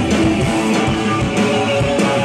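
Live rock band playing an instrumental stretch, led by strummed electric guitar over keyboards and drums, heard loud and steady.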